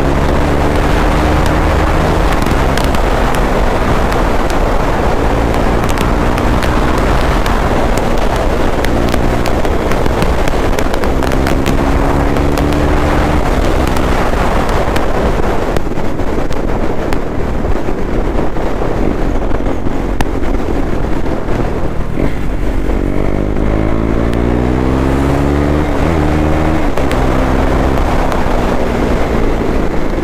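KTM Duke 390's single-cylinder engine pulling on the road, its revs climbing and dropping back again several times as the throttle is worked and gears change, most clearly near the end. Wind rush on the helmet microphone runs underneath.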